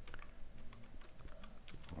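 Faint, slow typing on a computer keyboard: a few irregular keystrokes.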